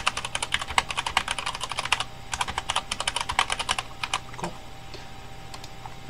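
Typing on a computer keyboard: a quick run of keystrokes with a brief pause about two seconds in, a few last keys a little after four seconds, then it stops.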